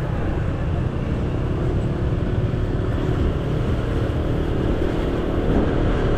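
Motor scooter engine running steadily while riding at low speed, with road noise.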